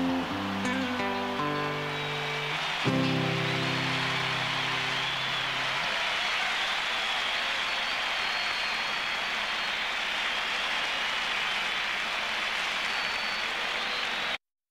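Nylon-string classical guitar ends a song: a last strummed chord about three seconds in rings out for a few seconds. Under it, the applause of a very large crowd swells and carries on steadily after the chord dies away.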